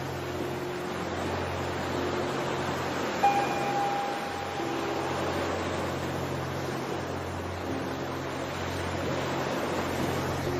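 Recorded ocean waves as a steady wash, mixed with a slow ambient music track: a low steady drone and a few quiet held notes, with one brighter note struck about three seconds in.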